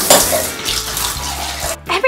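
A shower running: a steady rush of water that cuts off suddenly near the end.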